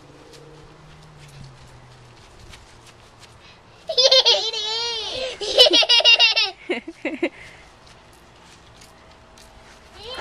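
A young child laughing: a high-pitched run of laughter that starts about four seconds in and lasts about three seconds.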